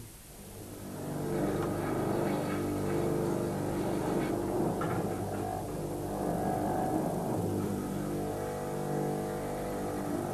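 Electric bench grinder spinning up over about the first second, then running with a steady motor hum.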